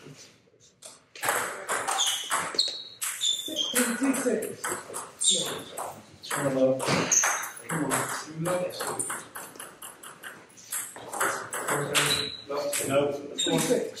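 Table tennis rallies: the ball clicks sharply off bats and the table in quick succession, over people talking in a hall.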